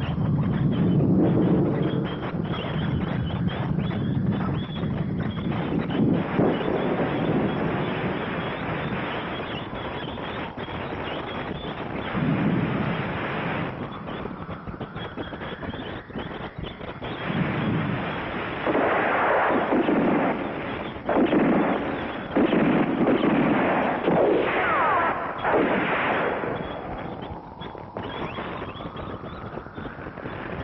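Action-film sound effects: gunfire and blasts, with a run of loud bursts in the second half, and a motorcycle engine revving with its pitch rising.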